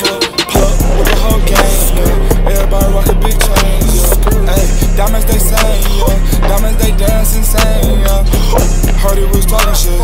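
Hip hop backing track with a heavy bass beat that kicks in about half a second in, playing loud and steady with crisp percussion and no vocals.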